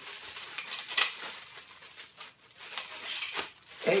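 Plastic wrapping crinkling as plastic-sleeved metal wardrobe poles are handled and unwrapped, with a few light clicks of the poles.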